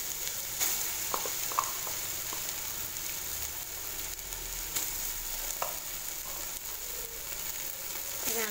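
Sliced shallots, curry leaves and green chillies sizzling steadily in hot oil in a metal pot, with ginger-garlic paste just added on top. A few sharp little clicks sound now and then through the sizzle.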